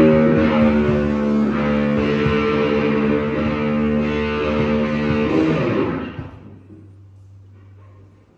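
Electric guitars and bass guitar played through amplifiers, ringing out one loud held chord that dies away about six seconds in, leaving a low steady hum.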